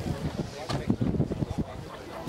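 Wind buffeting the microphone in irregular low rumbling gusts, with people's voices in the background.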